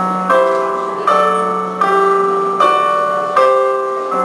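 Keyboard music: a slow run of chords, a new one struck about every three-quarters of a second, each ringing on and fading slightly before the next.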